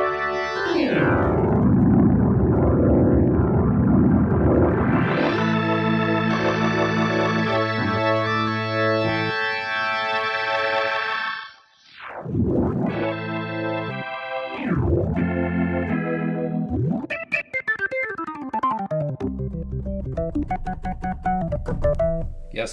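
Nord Electro 5D organ played through a Neo Instruments Ventilator II rotary speaker simulator, with its reverb turned well up. Held chords are broken by several sweeping glissando swipes up and down the keys, and it turns to shorter, choppier notes near the end.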